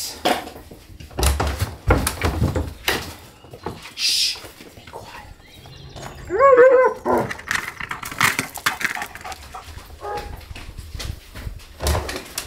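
A young German Shepherd-type dog barking in a quick run of high yelps about six seconds in, set off by its ball stuck under a car. Scattered knocks and clatter come before and after.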